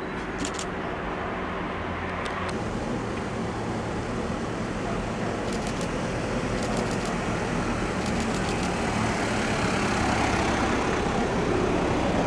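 A car driving slowly toward the microphone on a street, its engine and tyres growing steadily louder until it passes close by near the end. Several short runs of quick, sharp clicks sound over it.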